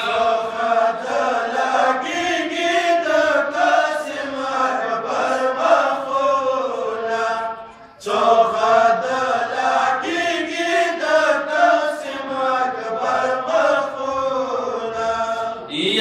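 A group of men chanting a Pashto noha, a Shia mourning lament, in unison into a microphone. The chant breaks off briefly about halfway through, then resumes.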